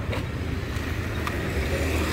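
Steady low rumble of street traffic, with a few faint clicks.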